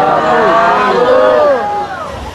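Many voices of a congregation chanting together, their pitches overlapping and gliding, breaking off shortly before the end.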